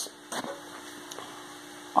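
Quiet room with a faint steady hum, and one brief soft rustle about a third of a second in as a paper template is handled.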